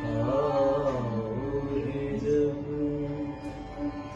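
A woman singing a slow semi-classical Hindi song, holding long notes with ornamented bends, accompanied by an acoustic guitar.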